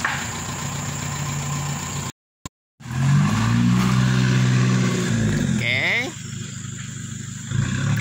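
A vehicle engine idles steadily. After a short break, a Toyota Hilux pickup's engine runs louder, rising a little in pitch as the pickup turns around on a dirt track. It then eases off for a second or two and picks up again near the end.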